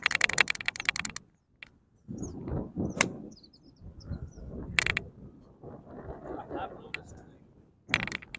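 A golf club striking a ball off turf: one sharp crack about three seconds in. A fast run of clicks fills the first second.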